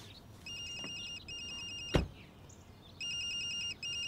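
Mobile phone ringtone: an electronic trilling tone ringing in pairs of short bursts, twice. A single sharp knock about two seconds in.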